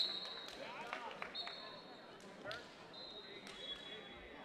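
Referee whistles blowing across a gym hall of wrestling mats: a short blast at the start, then two longer blasts of about a second each. Shoes squeak and knock on the mats, under a murmur of voices in the hall.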